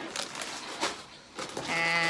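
A plastic snack bag of crackers crinkling as it is shaken and handled. Near the end a woman's voice begins with a drawn-out sound.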